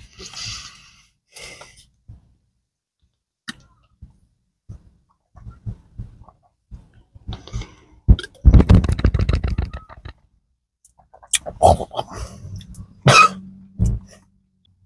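A man coughing and clearing his throat after swallowing dry pre-workout powder, with a two-second run of gulps from a plastic sports-drink bottle past the middle and a few sharp coughs near the end.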